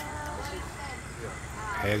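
People talking in the background, with a closer voice cutting in near the end, over a steady low hum.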